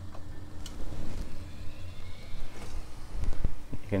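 Steady low hum of a central heating system running, with a faint steady tone that stops about two and a half seconds in as the hot-water zone is switched off and its motorised valve springs shut, plus a few light clicks.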